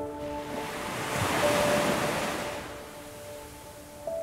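Ocean surf washing in: the wave noise swells to its loudest about one to two seconds in, then ebbs away. Soft sustained piano notes fade out under it early on, with a few faint notes later.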